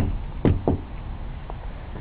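A few short knocks and clicks as a cold frame's glazed lid is handled and lifted open, the sharpest right at the start and the rest spread over the next second and a half.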